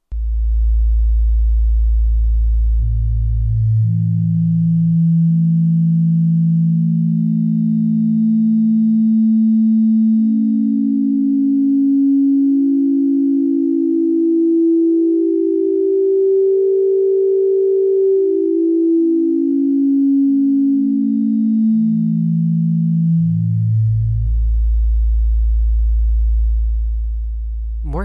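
Synthesis Technology E350 Morphing Terrarium wavetable oscillator playing a pure, sine-like tone from its simple-harmonics bank while its Morph X control is swept. The tone climbs the harmonic series in even steps, one harmonic at a time, to a peak a little past the middle, then steps back down to the low starting note.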